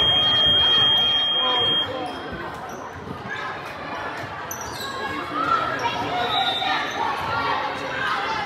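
Gym crowd talking and shouting during a volleyball rally, with the thuds of the ball being hit. A steady high referee's whistle sounds for about the first two seconds.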